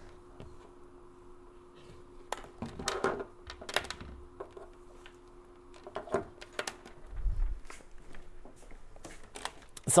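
Handling noise from lab equipment on a desk: scattered clicks and knocks as a multimeter is searched for and picked up, with a faint steady hum underneath that stops shortly before the end.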